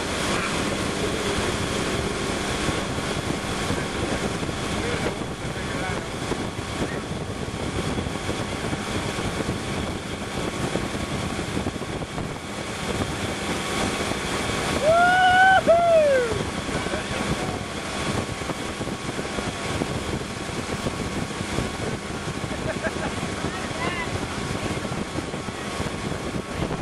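Motorboat engine running steadily under the rush of its wake and spray, with wind buffeting the microphone. About fifteen seconds in, a person lets out one loud whoop that rises and then falls in pitch.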